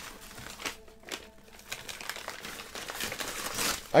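Brown bubble-wrap-lined padded envelope crinkling and rustling in fits and starts as hands pull it open and reach inside, with a brief lull about a second in.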